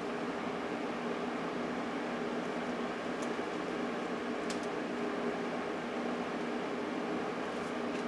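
Steady hum of an opened-up Amiga 3000 computer running on the bench, its power-supply fan and drives whirring, with a couple of faint clicks partway through.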